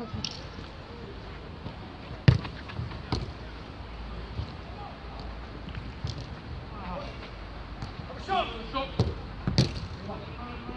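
A football being kicked during a five-a-side game: several sharp thuds of boot on ball, the loudest about two seconds in and two more near the end, with players calling out just before the last ones.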